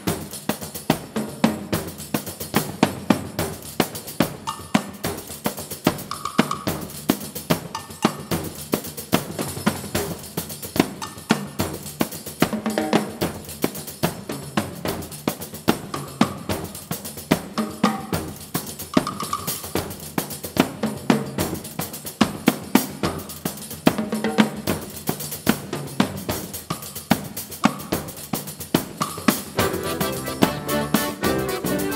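Live percussion playing a quick, steady beat of sharp strokes, with little melody over it.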